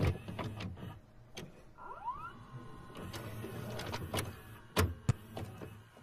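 VCR tape transport engaging play: mechanical clicks, the motor whirring with a short rising whine about two seconds in under a low hum, then two sharp clicks near the end.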